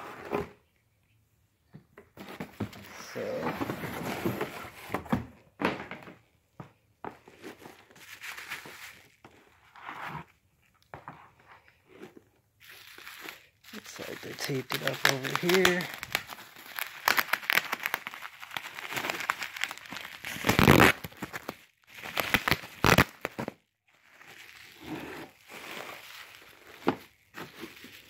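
Plastic bubble wrap crinkling and rustling in irregular bursts as it is handled and peeled open, with sharper crackles, the loudest about two-thirds of the way in.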